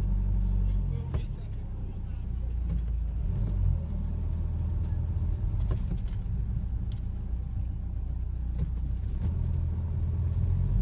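Car engine and road rumble heard from inside the cabin as the car creeps forward in slow traffic, with a few light clicks.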